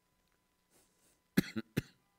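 Two short coughs close together, about a second and a half in, with near silence before them.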